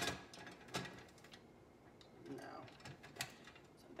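A few light clicks and knocks of a small decorative lantern being handled and tried inside a basket, scattered across a few seconds with the sharpest click at the very start.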